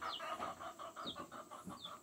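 Young Rhode Island Red and golden comet chicks peeping softly in a brooder, a few short, high, falling cheeps spread through the moment.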